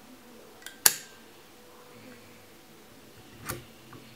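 Vintage chrome table lighter's push-down mechanism clicking as its top is pressed: a sharp metallic snap about a second in and a softer click near the end.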